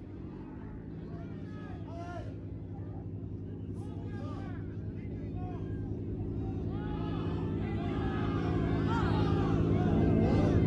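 Car engine idling steadily, slowly growing louder, with people chatting over it.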